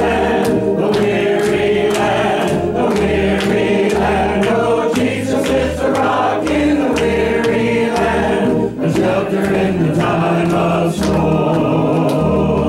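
A small church congregation singing together over an accompaniment with a steady, pulsing bass beat, with hand clapping in time.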